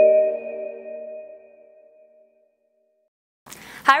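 The tail of a short logo jingle of pinging, chime-like notes. A last higher note sounds at the start and rings on over several held tones, all fading out over about two seconds. Silence follows, then a voice begins near the end.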